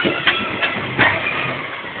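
Loud, dense outdoor mix of a vehicle engine running under music, with scattered sharp hits.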